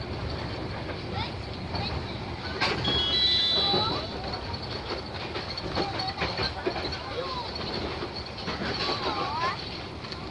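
A passenger train car running along the line: a steady rumble of wheels on the rails with scattered clicks. About three seconds in there is a louder stretch with brief high-pitched ringing tones.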